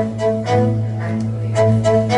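Live band playing an instrumental passage with no vocals: a bowed upright bass plays a repeating figure of short notes over a steady held low note, with light percussion ticks.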